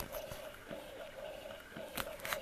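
Medela Pump In Style Advanced electric breast pump running with a faint hum, its suction working the white valve, with a light click near the end.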